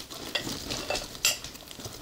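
Rustling and light clattering of shopping items being handled and set down, with several short sharp clicks and scrapes.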